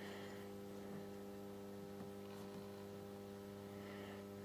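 Solis grid-tie inverter giving a faint, low, steady hum while powered from a DC test supply. The hum is a sign that it is running even though it reports no output power.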